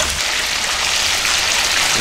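Thinly sliced pork loin sizzling steadily in a frying pan as the soy-and-ginger sauce bubbles and reduces around it.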